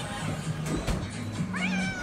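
A domestic cat meowing, with one drawn-out meow about a second and a half in that rises and then falls in pitch.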